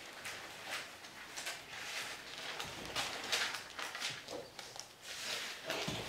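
Faint, irregular rustling and soft knocks of paper pages being turned and handled, several short strokes a fraction of a second apart.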